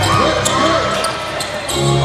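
Basketball being dribbled on a hardwood court during live play, with arena background noise.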